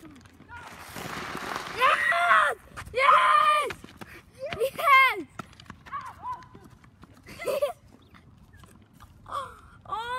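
Boys yelling without words: three loud, high-pitched yells in the first five seconds that rise and fall in pitch, and a shorter one at about seven and a half seconds. A rush of hiss comes about a second in, just before the first yell.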